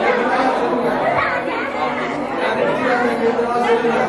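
Chatter of several people talking at once in a room, the voices overlapping so that no single speaker stands out.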